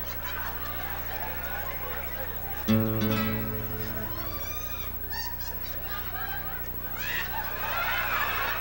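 Acoustic guitar chord struck once, about three seconds in, ringing out for about a second and a half. Audience laughter and murmur run underneath.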